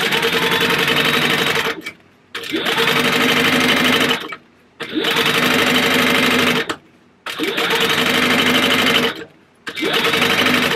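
Sewing machine top-stitching along a zipper through vinyl and zipper tape, running in stretches of about two seconds with four short stops between. Each run starts with the motor whirring up in pitch, then holds a steady hum.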